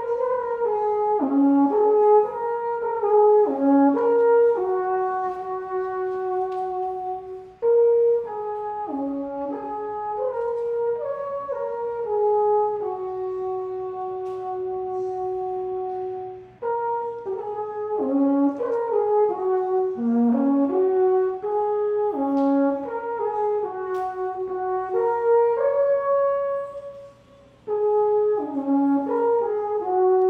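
Alphorn played solo: a slow melody of held notes in four phrases, separated by short pauses about 8, 17 and 27 seconds in.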